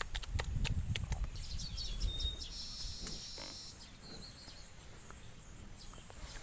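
Water buffalo grazing, tearing and chewing leafy green plants with a quick run of crisp crunching clicks. The clicks are loudest in the first second or two and then fade.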